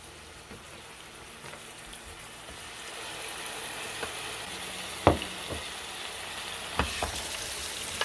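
A beef patty with shredded cheese sizzling in a closed electric waffle iron. The sizzle grows louder from about three seconds in, with a sharp click about five seconds in and a smaller knock near seven seconds as the lid is handled and opened.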